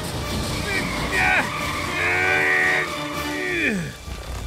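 A cartoon bus character's panicked cries: short yelps, then a long held yell about halfway through, then a cry that slides down in pitch near the end. Under them runs the low rumble of the runaway bus.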